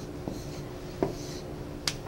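Three short, sharp clicks or taps, the last one the loudest, over a steady faint electrical hum.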